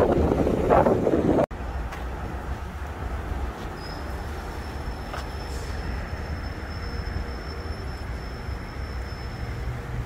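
Wind buffeting the microphone for the first second and a half, cut off suddenly. Then a steady low outdoor traffic rumble, with a thin high-pitched whine held steady for about six seconds through the middle.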